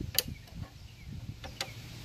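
Two sharp clicks about a second and a half apart, over faint handling rustle: the shutoff cable lever on a Craftsman push mower's handle being worked and snapping back. This is the engine shutoff cable that doesn't spring back consistently.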